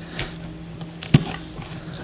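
Metal spoon scraping seeds and stringy pulp out of a halved butternut squash, with a sharp click just past a second in.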